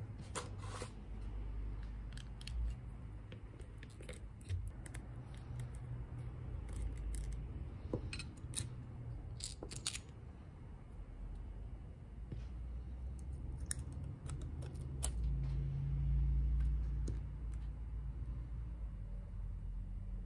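Small metal clicks and scrapes of a screwdriver and loose screws and covers as a Walbro diaphragm carburetor is taken apart by hand. The light clicks are scattered over a low rumble of handling on the bench.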